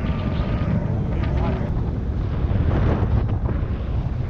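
Wind buffeting the microphone of a body-worn camera, a steady low rumble, with faint voices in the distance.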